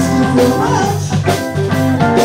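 Live band playing a song: electric guitar, electric bass, keyboard and drum kit, with a steady drum beat.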